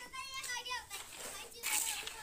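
Children's voices, high-pitched calling and chatter, in the first second, with a short noisy burst near the end.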